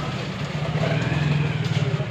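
A steady low engine drone from nearby road traffic, swelling louder for a second or so in the middle, over general street noise.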